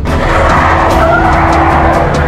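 Tyres screeching as a pickup truck pulls away hard, over background music.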